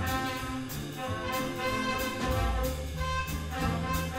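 Jazz big band playing: sustained brass and saxophone chords over a moving bass line, with regular cymbal strokes from the drum kit.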